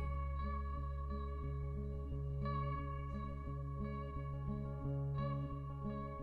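Live band playing an instrumental passage with no vocals: an electric guitar picks a repeating figure of about two notes a second over a steady, held low bass note, with higher notes ringing on.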